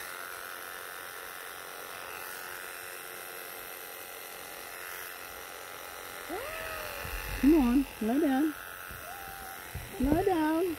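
Wahl KM2 electric animal clippers running steadily as they shear a long-haired Persian cat. From about six seconds in the cat gives several drawn-out meows that rise and fall in pitch, the two loudest close together near the eight-second mark: the cat protesting the clipping.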